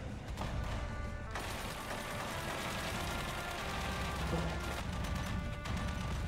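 War film soundtrack: a music score under a battle scene, with dense gunfire that thickens about a second and a half in.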